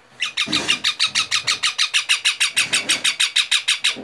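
A young green parakeet calling in a rapid, even series of sharp, high, loud squawks, about seven a second, that stops just before the end.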